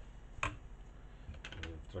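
Small clicks and knocks of a metal spoon and kitchen utensils being handled at a stainless steel pot: one sharp click about half a second in, then a few lighter ones near the end.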